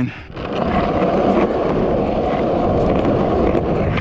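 Skateboard wheels rolling on concrete, a steady rumble that sets in shortly after the start once the board is put down and ridden.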